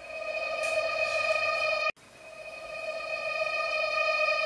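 A steady, single-pitched synthesized tone from a horror soundtrack. It swells in and cuts off abruptly about two seconds in, then fades back in and holds.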